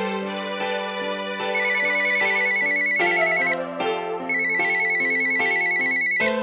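A telephone ringing twice, each warbling electronic ring lasting about two seconds with a short gap between, over keyboard music.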